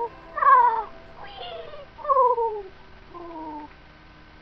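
A series of about five short, meow-like calls, each one falling in pitch over roughly half a second, with short gaps between them; the last one is fainter.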